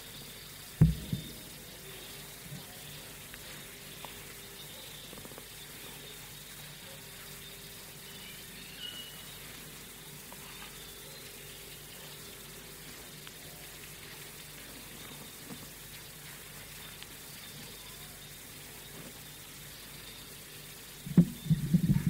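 Steady background hiss with a faint low hum from the recording, during a long pause in the talk, and one short low thump about a second in.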